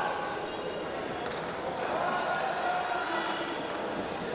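Steady murmur of a small crowd, with faint scattered voices over it.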